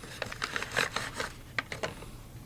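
A cloth drawstring pouch being handled and opened: irregular rustling with short light clicks and taps.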